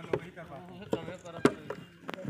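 Sharp knocks and clicks from a hand-held plastic jug, about four in two seconds, the loudest about one and a half seconds in.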